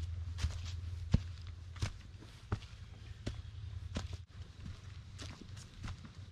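Footsteps of a hiker on a dirt trail strewn with dry fallen leaves, about one step every half to three-quarters of a second. A low steady rumble underlies the first two seconds, then fades.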